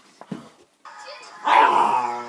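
A pet dog barks once, loudly, about a second and a half in, after a few faint knocks.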